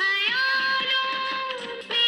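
Bollywood film-song music in a passage without lyrics: a high wordless voice holds one long note for about a second and a half, dipping in pitch at the end, over the instrumental backing.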